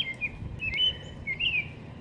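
A small bird chirping: a few short, high whistled phrases, the last one near the end.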